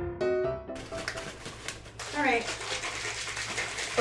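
Background piano music, a few sustained notes that cut off about a second in, giving way to room noise.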